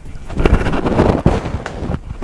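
A person dismounting a doorway pull-up bar: a loud rush of noise with several thumps as the body swings down and the feet land on the floor.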